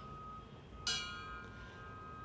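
Polished chrome fire-department memorial bell struck once with a striker, about a second in, ringing bright and fading slowly. It is tolled after each name in a roll call of fallen firefighters.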